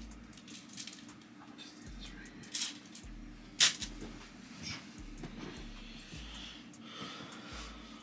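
Scattered handling clicks and knocks of someone tidying a small room with plastic clothes hangers, one sharp knock about three and a half seconds in, over a low steady hum.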